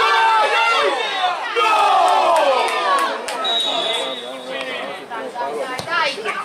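Football players and spectators shouting over one another on the pitch, with a brief high whistle about three and a half seconds in.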